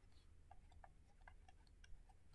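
Near silence with faint, unevenly spaced ticks, several a second, of a stylus tapping a tablet screen as words are written by hand.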